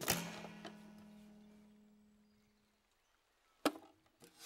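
A rack of violins strummed all at once: one loud chord that rings and fades away over about three seconds. A single sharp click follows near the end.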